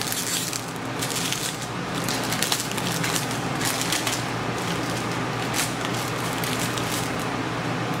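Plastic bag crinkling and rustling as a clear LED tail light is pulled out of it, a dense run of irregular crackles.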